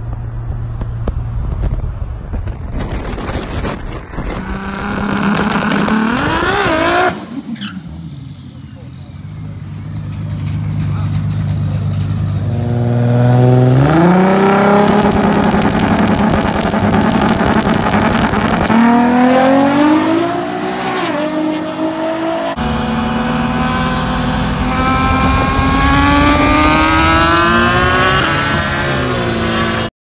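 Turbocharged Toyota Supra engine revving and accelerating hard in a string of short clips that cut abruptly from one to the next, its pitch climbing and falling with the throttle and gear changes. The loudest pull comes in the middle.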